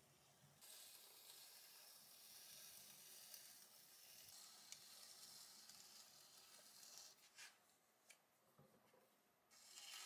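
Faint scraping hiss of a trimming tool shaving leather-hard stoneware clay on a turning potter's wheel. It starts about half a second in, drops away for about two seconds near the end, then resumes.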